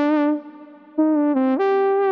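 Synthesizer notes played through a Raum reverb set fully wet: a held note dies away into a reverb tail, then about a second in a short phrase of notes steps up to a higher held note.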